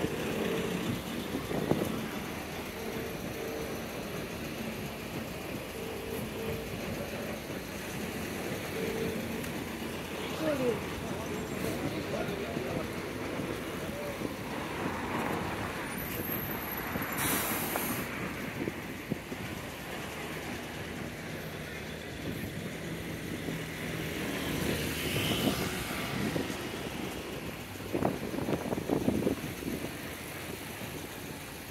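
Busy urban high-street ambience: road traffic passing and the voices of passers-by. About halfway through comes a brief hiss of a bus's air brakes.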